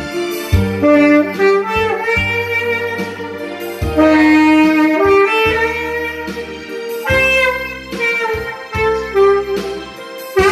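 Tenor saxophone playing a slow ballad melody in long held notes, with a recorded backing track carrying a bass line underneath.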